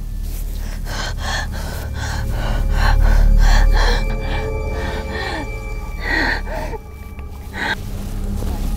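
A woman gasping in short, fast breaths, about three a second, with two louder gasps near the end, over low, ominous background music that swells about three seconds in.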